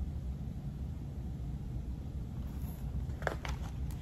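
Steady low room hum, with a brief paper rustle and handling noise near the end as a hardcover picture book's page is turned.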